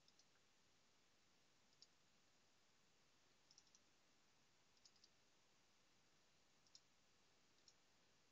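Faint computer mouse button clicks over near silence: single clicks and quick pairs and triplets, spaced a second or more apart.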